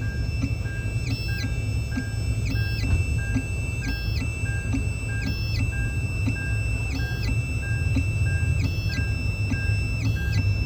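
Xhorse Dolphin key-cutting machine decoding a key. Its motors whine in high tones that jump up and down in pitch every half second or so as the tracing pin moves around the key's cuts, over a steady low hum.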